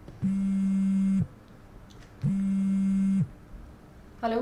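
Mobile phone buzzing on vibrate with an incoming call: two steady buzzes of about a second each, a second apart.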